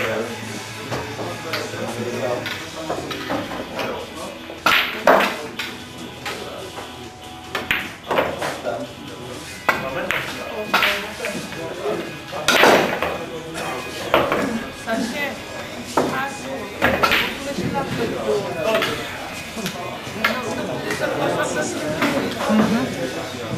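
Pool balls clacking: cue tips striking and balls knocking together, a dozen or so sharp knocks at irregular intervals from several tables in play, the loudest about two thirds of the way through.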